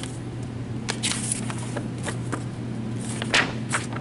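Baum 714 Ultrafold XLT air-feed paper folder running, its motor and vacuum pump giving a steady low hum, with short irregular rustles of paper as a stack of folded sheets is handled, the loudest about a second in and again past three seconds.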